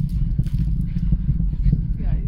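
Low, crackling rumble of a distant SpaceX rocket launch.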